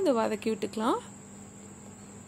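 A woman's voice speaking for about the first second, then low steady background noise with a faint, steady high-pitched whine.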